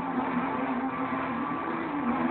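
An amplified pop song in which a voice holds one long, slightly wavering note.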